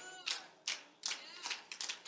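Scattered hand clapping from a church congregation: a few uneven claps, fairly quiet, with faint voices.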